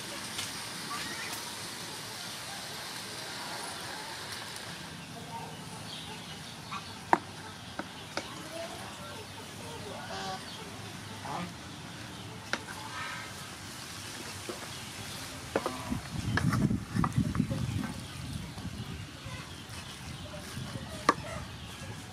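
Spaghetti being tossed into a sizzling shrimp and tomato sauce in a pan over a charcoal stove: a soft sizzle that fades after the first few seconds, a few sharp clinks of the spatula and tongs against the pan, and a louder rough stretch of stirring about two-thirds through. Chickens cluck in the background.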